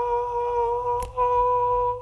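A young man's voice holding a long high-pitched note, calling out with his mouth wide open. The note is held steady in two long stretches with a brief break about a second in.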